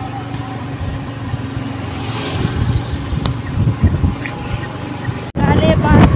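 Steady low rumble of a moving vehicle heard from on board: engine and road noise with no voice over it. It cuts off suddenly about five seconds in, and a voice follows.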